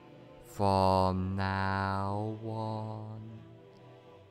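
Meditation music with a deep voice chanting: one long drawn-out note starting about half a second in, then a shorter, softer one, over a quiet background.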